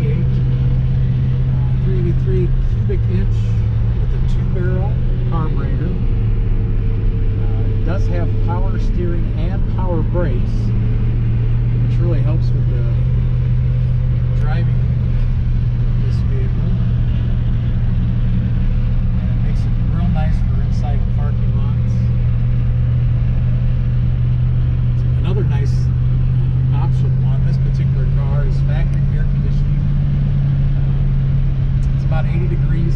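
1967 Plymouth Fury III heard from inside the cabin while driving: a steady low engine drone with road noise. The pitch drops a little about three seconds in and rises again near the end.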